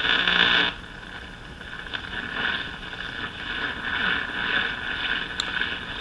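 Static and hiss from the speaker of an early-1930s Silvertone 1704 tube radio as its tuning condenser is swept between stations, with a louder burst of noise in the first second.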